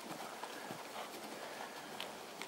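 A horse's hooves hitting a sand arena surface in a regular run of soft thuds.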